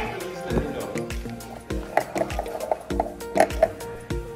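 Background music with a steady beat. About two seconds in comes a quick run of short pitched blips.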